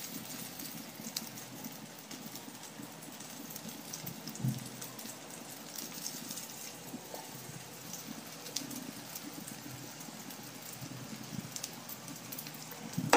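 Oil sizzling steadily with scattered light crackles as coated round slices shallow-fry in a pan.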